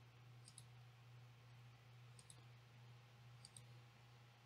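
Near silence with a steady low hum and three faint double clicks of a computer mouse button, each a quick press-and-release, about a second and a half apart.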